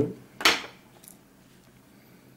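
A single sharp snip of fly-tying scissors cutting off the shellback back material, about half a second in, followed by a faint tick.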